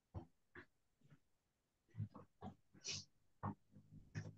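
Faint, short vocal noises from a person over a video-call microphone: a string of brief grunts and breaths, about ten in a few seconds, some low-pitched and some hissy.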